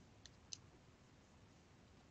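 Near silence: faint room tone, with two faint clicks about a quarter and half a second in, the second the louder.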